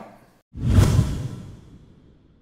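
A whoosh transition sound effect with a deep low end, starting suddenly about half a second in and fading away over the next second and a half.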